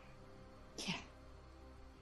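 Faint, steady background music bed with one short spoken "yeah", falling in pitch, about a second in.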